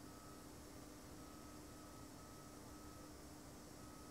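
Near silence: room tone with a faint steady hum and a faint higher tone that keeps cutting in and out.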